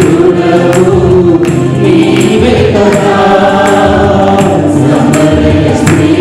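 Small mixed choir of men and women singing a Telugu Christian praise song, with electronic keyboard accompaniment and a steady percussion beat.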